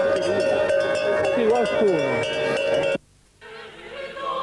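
Small bells clanking over a held drone note of pipe music, with a wavering call sliding down in pitch near the middle. The whole mix cuts off abruptly about three seconds in, leaving a moment of near silence.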